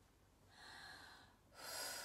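A woman breathing deeply through the mouth: two long breaths, the second louder.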